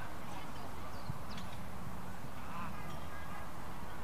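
Faint, scattered high-pitched shouts from young players, heard over steady outdoor background noise.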